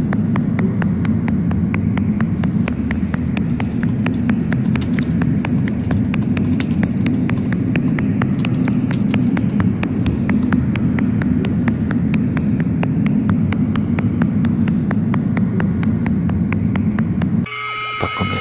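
Loud, steady low rumble of a moving public-transit vehicle heard from inside the passenger car, with a fast run of light ticks or rattles over it through the first half. The rumble cuts off suddenly just before the end.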